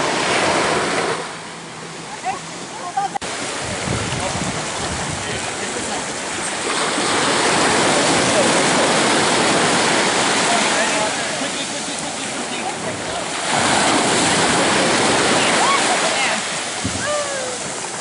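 Small surf waves breaking and washing up on a sandy beach, the rush of water swelling louder and easing off every few seconds, with faint voices over it.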